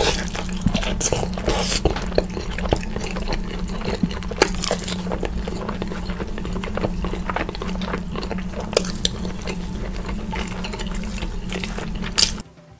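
Close-miked wet chewing and lip-smacking of rotisserie chicken, with meat being torn from the bone, a rapid stream of small sticky clicks and a few sharper ones, loudest about four and nine seconds in, over a steady low hum.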